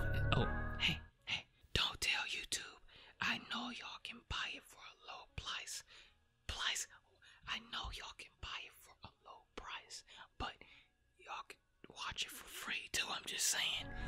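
A person whispering in short, breathy phrases separated by brief silences.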